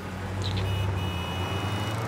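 City street traffic: a motor vehicle running close by with a low, steady hum over a wash of road noise, and a thin high whine joining about half a second in.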